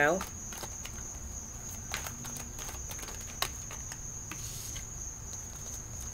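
A deck of tarot cards being shuffled by hand: scattered soft clicks and taps of the cards, with a brief rustle a little past the middle. A steady high-pitched tone sounds underneath.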